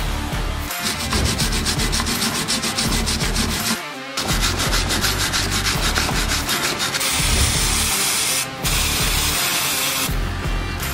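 A wire brush scrubbing a rusty cast-iron brake caliper carrier clamped in a vise, in rapid back-and-forth strokes with a short pause about four seconds in. From about seven seconds in comes the steady hiss of an aerosol brake cleaner spraying the carrier, broken once briefly, with background music underneath.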